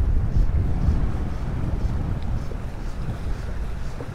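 Gusty wind buffeting a GoPro's microphone, a low, uneven rumble that eases slightly toward the end.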